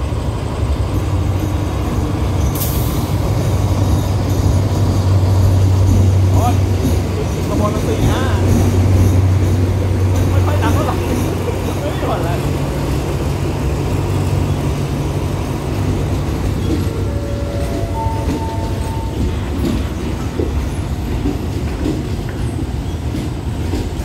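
Diesel locomotive and passenger coaches of a commuter train rolling into the station alongside the platform. The locomotive's engine makes a steady low hum, with wheel noise from the coaches as they pass, and a few brief high squeals about three quarters of the way through as the train slows to stop.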